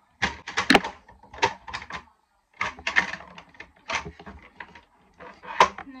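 Makeup items being rummaged through and set down on a desk: a run of sharp clicks, knocks and plastic clatter, with a short pause about two seconds in.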